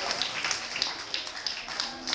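Scattered hand clapping from a small audience, irregular claps over a low murmur of the room.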